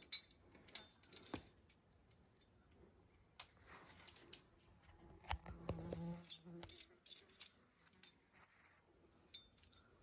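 Near silence broken by a few faint, sharp metallic clicks and clinks: an abseiling carabiner and descender being unclipped from the rope at the harness.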